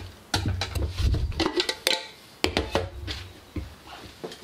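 Plastic clicks and knocks from a Jobo film-developing tank and its lid being handled on a table, in several short clusters with low thumps under them.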